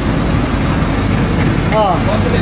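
City bus engine running at idle, heard from inside the bus as a steady low drone.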